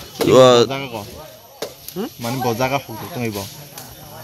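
Speech only: a person talking, loudest briefly near the start, then more talking after a short pause.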